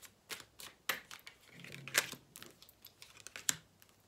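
Tarot cards being handled and shuffled by hand: a run of irregular sharp clicks and taps, with two louder snaps about halfway through and near the end.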